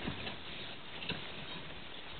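Faint, irregular soft clops and crunches of horse hooves on a packed-snow road as a horse-drawn cutter sleigh moves away.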